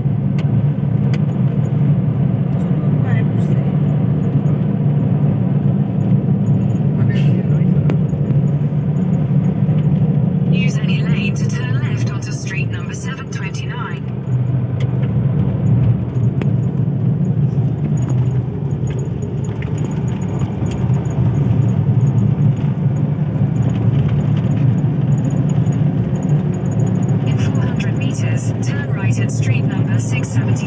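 Steady low drone of a car's engine and tyres, heard from inside the cabin while driving on a wet road. Brief voices come in around the middle and again near the end.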